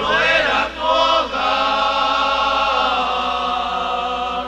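Men's voices singing a Spanish-language evangelical hymn in harmony: a short phrase that bends up and down, then a long held chord, with little instrumental accompaniment.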